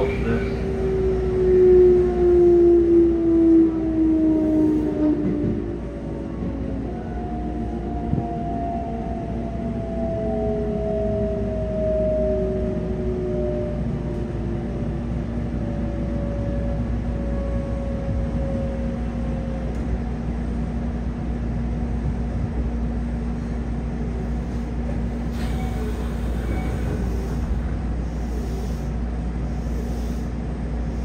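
Electric train's inverter and traction-motor whine, heard from inside a passenger car: tones gliding steadily down in pitch over the first twenty seconds or so as the train slows. Under it is a steady low hum.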